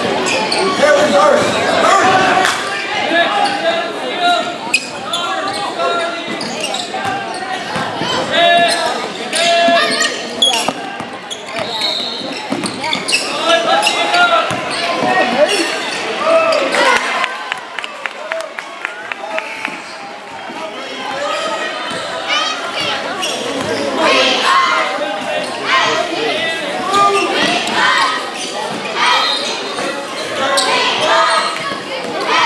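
A basketball being dribbled and bounced on a hardwood gym floor during a game, with players' and spectators' voices echoing in the large gym.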